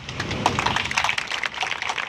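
Crowd applauding: many hands clapping at once, starting right as the speaker breaks off.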